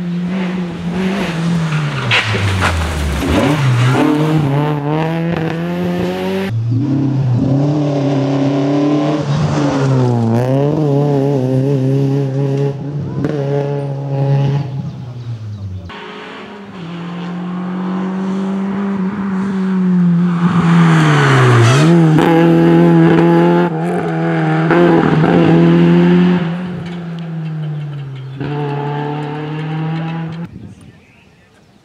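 Opel Kadett GSi rally car's four-cylinder engine being driven hard, its note climbing with the revs and falling sharply at each gear change, with a deep drop under braking a few seconds in. The sound breaks off just past halfway and picks up again with another hard run through the gears.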